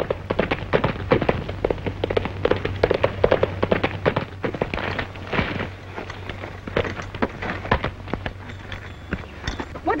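Hoofbeats of a galloping horse, a rapid run of sharp knocks, over the steady low hum of an old film soundtrack.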